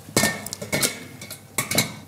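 Kitchen utensils knocking and scraping against stainless-steel pans on the hob: three short metallic knocks, two of them leaving a brief ringing tone.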